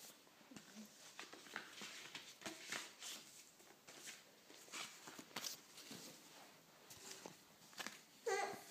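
Near silence, broken by faint scattered rustles and light taps.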